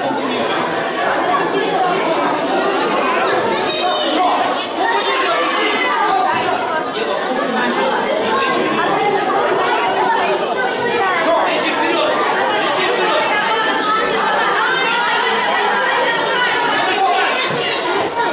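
Many overlapping voices in a large, echoing hall: a crowd of spectators chattering steadily, with no single voice standing out.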